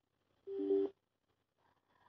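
A short electronic beep of steady tones, about half a second long, sounding once.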